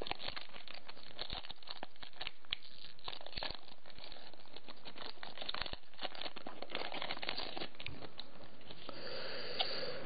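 Foil wrapper of a Pokémon card booster pack crinkling and tearing as it is opened by hand, with many small rustles and clicks as the cards inside are handled.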